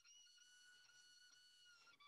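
Near silence: room tone with a few faint, steady high-pitched tones.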